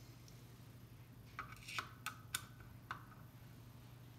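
A handful of light metal-on-metal clicks and taps, about five in a second and a half near the middle, some ringing briefly, as a small steel rod is worked into the brass fitting on top of a TG611 steam-turbine governor. A faint steady hum lies underneath.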